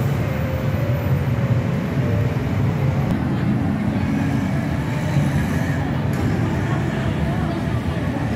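Steady low roar of heavy city traffic, with crowd chatter over it.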